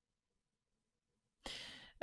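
Near silence, then about a second and a half in a short, sharp breath drawn in close to the microphone, fading over half a second.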